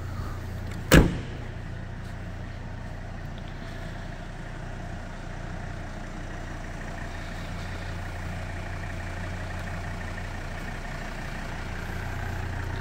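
A single sharp clunk about a second in, as a folding rear seat or boot part is released, then the steady low hum of the 2010 Volvo XC90's 2.4 diesel engine idling.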